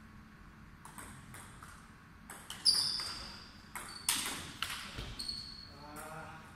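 Table tennis rally: the ball clicking off bats and table in an irregular series of sharp knocks, loudest about two and a half and four seconds in. Some hits leave a short, high ringing ping.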